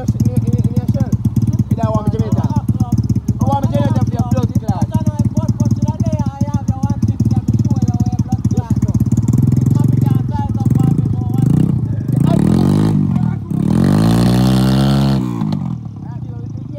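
An engine running close by with voices over it. Near the end it revs up and back down, twice, then drops off.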